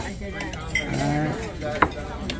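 Cutlery and dishes clinking on a restaurant table: a light clink at the start and a sharper one near the end, with voices in the background.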